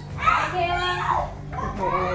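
Young children's voices calling out while playing, with one high-pitched child's cry about a second long early on.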